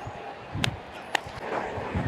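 Rustle and low rumble on a player's body-worn microphone, with two sharp clicks a little over half a second apart in the middle.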